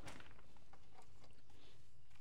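Hands working moist potting soil around a tomato transplant's root ball in a pot: a soft rustling crunch right at the start as the root ball goes into the hole, then scattered faint crumbling crackles as soil is pushed back.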